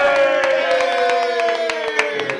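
A small group cheering, with one long drawn-out shout that slowly falls in pitch, a second voice joining it briefly, and quick hand claps.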